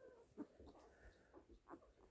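Faint, brief squeaks and whimpers from a young labradoodle puppy, eyes still closed, as it is handled and turned over.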